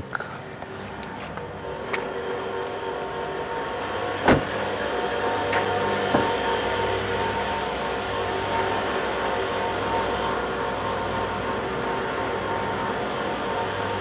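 A steady mechanical hum holding the same few pitches throughout, building up over the first few seconds, with one sharp knock about four seconds in and a few faint clicks.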